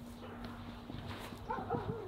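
German Shepherd whining: short high-pitched whines that begin about one and a half seconds in, the first one sliding down in pitch.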